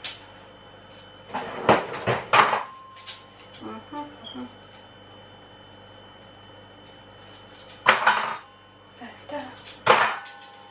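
Dishes, metal pans and cutlery clattering as they are dried and handled at a kitchen counter, in short bursts about a second and a half in, around two and a half and four seconds, and again near eight seconds and at the end. A faint steady hum runs underneath.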